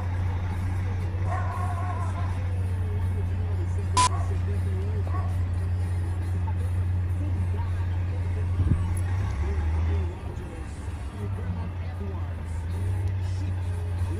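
A heavy truck's diesel engine running at low speed, heard as a steady low drone from inside the cab while the truck is eased into a parking spot. There is a single sharp click about four seconds in, and around ten seconds in the engine note changes and drops for a moment.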